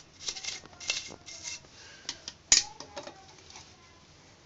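Toothbrush bristles scrubbing an ant nest (formicarium) in short quick strokes, with one sharp knock about two and a half seconds in.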